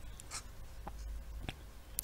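Faint handling noises at a desk: a few soft, separate clicks and light scratchy rubbing over low room hiss.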